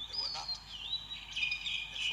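Small birds singing and chirping, with clear high whistled notes that slide in pitch and hold, heard from a projected film's soundtrack played in a hall.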